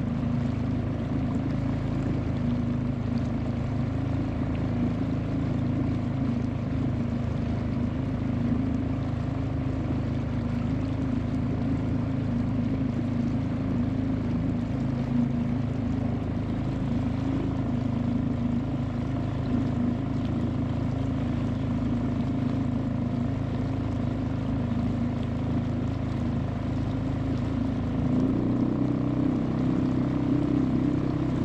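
Outboard motor running steadily while pushing an inflatable boat along a calm river, a constant low hum. Its note changes a couple of seconds before the end.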